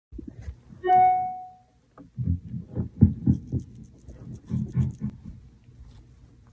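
Amplified violin with effects, played experimentally: a single ringing note about a second in, then uneven low, gritty bowed pulses and scrapes with faint scratchy bow noise above them.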